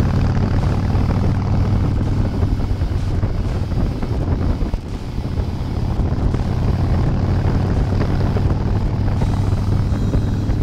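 Motorcycle V-twin engine running steadily at cruising speed, heard from the rider's seat as a continuous low drone. There is a brief dip in level about five seconds in.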